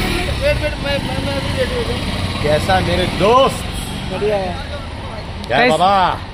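Scattered voices talking and calling out over a steady low rumble of street traffic with a vehicle engine running.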